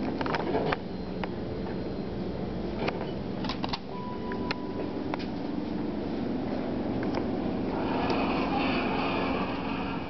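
Dover elevator doors sliding shut near the end, a louder rattling rush of about two seconds, over a steady hum. Before that come scattered light clicks and a short steady beep about four seconds in.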